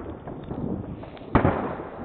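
Fireworks going off: one loud bang a little over a second in, trailing into a short echo, among a few fainter pops.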